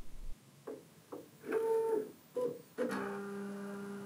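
Bambu Lab P2S 3D printer's stepper motors homing the axes: a few short pitched whirs in the first half, then a steady pitched hum from about three seconds in.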